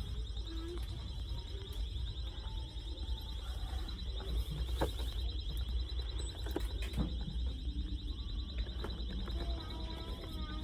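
A continuous high-pitched electronic alarm tone with a fast, even warble, sounding through a store, over a low background rumble. Toy boxes are handled against the shelf, with a couple of sharp knocks about midway and a little later.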